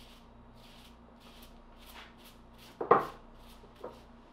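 A brush swept in short, quick strokes over raw bear meat, about two to three scratchy strokes a second, clearing loose hair off the butchered quarters. A sharp knock about three seconds in is the loudest sound.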